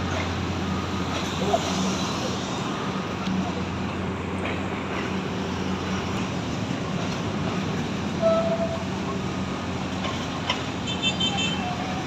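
A diesel commuter train passing below and running away down the track, with street traffic around it. The train's steady low engine hum drops away about four seconds in, and a short horn toot sounds about eight seconds in.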